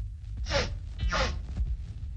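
Two sharp, gasping breaths from a man, about half a second apart, over the steady low hum of an old film soundtrack.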